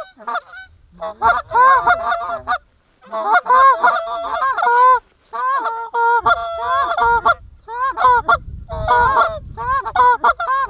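Canada geese honking and clucking: many overlapping calls in quick bouts, with short breaks about three and five seconds in.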